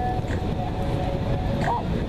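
Wind rumbling steadily on the microphone, with faint distant voices of people.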